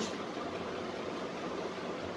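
Steady, even background hiss with no distinct events: room noise.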